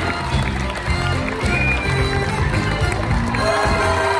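Upbeat curtain-call music from a live theatre band, loud and steady, with audience crowd noise beneath it.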